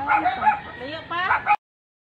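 A dog yipping and whining in quick, high, wavering calls. The sound cuts off suddenly about one and a half seconds in.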